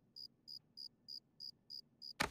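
Cartoon cricket-chirp sound effect, about three evenly spaced high chirps a second over otherwise near silence: the stock 'crickets' gag for an awkward, empty silence.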